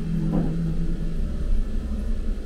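Ghost train ride car rumbling along its track, with a steady low hum that drops slightly in pitch and a faint knock about half a second in.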